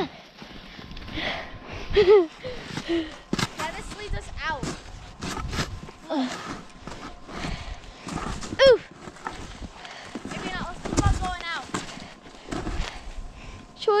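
Snowboard scraping over crusty snow and brushing through twigs. Short wordless shouts and calls from kids break in several times.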